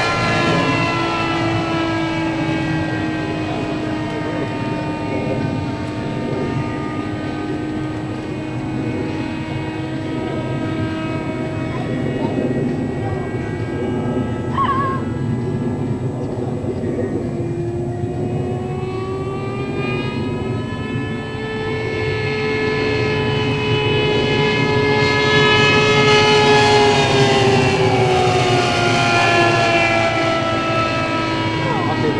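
Scale model Speed Canard's fuel-burning engine and propeller droning in flight as the model passes overhead: the pitch sinks as it goes by, rises again as it comes back round about twenty seconds in, and drops near the end.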